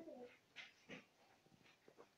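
Near silence: a voice trails off right at the start, followed by room tone with a few faint clicks.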